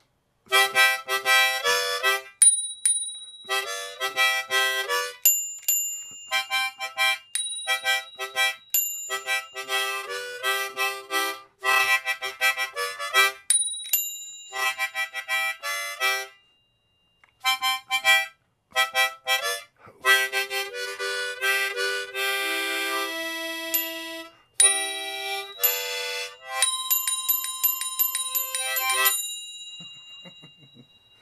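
A very old Hohner tremolo harmonica played in short chordal phrases with brief pauses. Its mounted bells ring now and then with high, clear tones that hang on after the notes stop.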